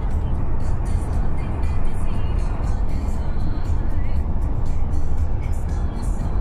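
Steady low rumble of a moving car, heard from inside the cabin, with music playing over it, likely from the car's radio.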